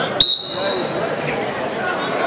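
Background chatter of spectators in a gym. About a quarter second in there is a sharp click, followed by a brief, steady high-pitched squeal lasting under a second.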